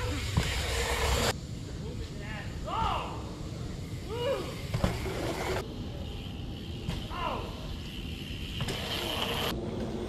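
BMX tyres rolling over packed-dirt jumps, with a few short, distant shouted calls. The rolling noise cuts off abruptly about a second in.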